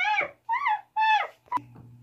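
Monkey calls: three short, high-pitched cries, each rising then falling in pitch, about half a second apart, followed by a single click.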